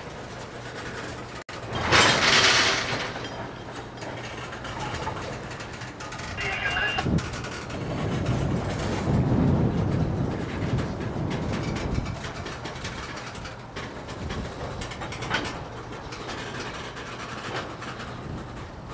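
Loaded freight train of tank cars rolling slowly past, with a steady rumble and clatter of wheels on rail. A loud short rush of noise comes about two seconds in.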